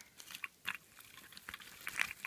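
Hard plastic gashapon capsules being handled: a series of small, irregular clicks and knocks as the capsules tap against one another, with light crinkly rustling.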